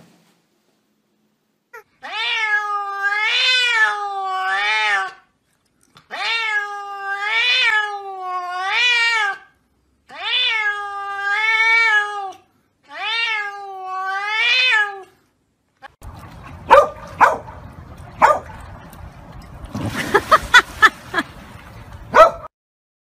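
A domestic cat giving four long, drawn-out meows, each wavering up and down in pitch, with short pauses between them. Near the end this gives way to a few seconds of noisy clatter with loud sharp cracks.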